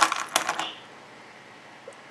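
A few light clicks and a short metallic clink in the first half second as small craft pieces with a metal chain and charms are handled and set down, then quiet room tone.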